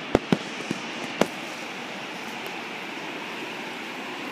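Steady rush of water at a mill's water wheel, with a few sharp clicks or knocks in the first second.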